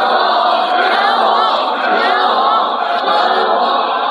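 A crowd of many voices chanting "quan wang" ("boxing king") over and over, hailing a boxer.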